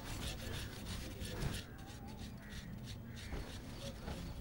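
Faint crows cawing in the background, with soft rustling of cloth.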